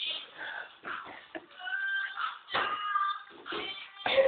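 High-pitched wordless vocalizing from a young woman: a string of short, sliding, cat-like cries.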